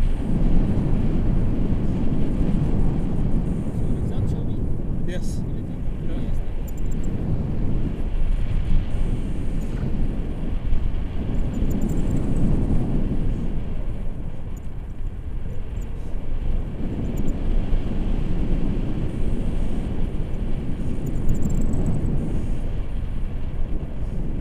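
Wind buffeting the camera microphone in flight on a tandem paraglider: a steady low rushing that swells and eases every few seconds.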